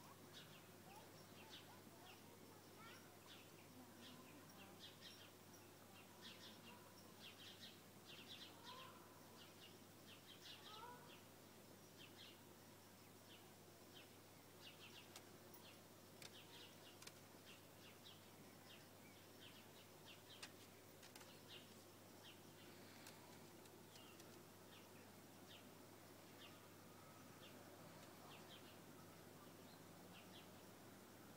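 Near silence: faint outdoor ambience with scattered, quiet bird chirps throughout and a low steady hum.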